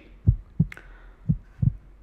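Pulsed-wave Doppler audio of mitral inflow from an echocardiography machine. Short, soft, low pulses come in pairs, about one pair a second, the two beats of each pair following the E and A waves of the heart's filling.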